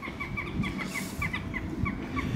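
A bird chirping: a rapid series of short, falling chirps, about four or five a second, over low background noise.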